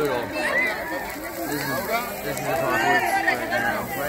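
Several people's voices talking and calling out at once, overlapping with no single clear speaker.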